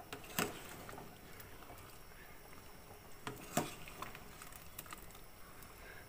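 Pot of chicken-feet soup with soy sauce boiling, a faint steady bubbling broken by a few sharp clicks, the loudest about half a second in and about three and a half seconds in.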